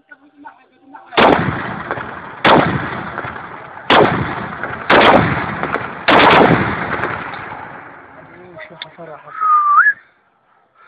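Five loud blasts of heavy weapons fire about a second apart, each followed by a long echo dying away: shelling of a residential area. A short shout rises near the end.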